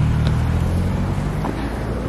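Steady, loud low rumble of outdoor street traffic.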